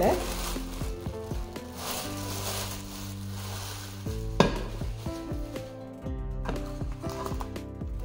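Thin plastic packaging bag crinkling and rustling as a cast-iron skillet is pulled out of it, followed by a single knock midway as the heavy skillet is handled.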